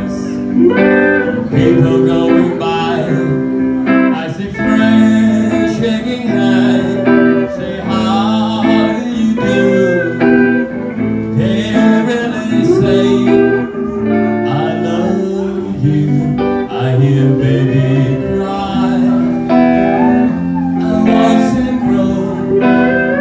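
Live electric guitars playing a slow ballad: a lead line with bending notes over steady chords and low bass notes.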